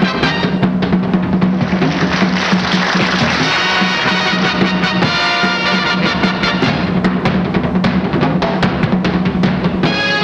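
1950s jazz band playing, dominated by rapid, busy drumming; held horn notes sound at the start, drop back under the drums through the middle and return near the end.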